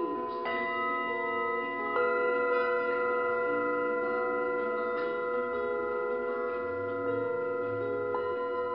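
Tibetan singing bowls struck one after another, each strike adding a new clear tone while the earlier ones ring on and overlap into a sustained, slightly wavering chord.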